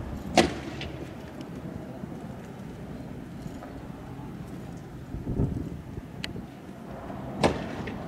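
Sharp bangs of fireworks going off, one loud about half a second in and another near the end, with a couple of fainter cracks between, over steady low background noise. A low rumble swells and fades a little after five seconds.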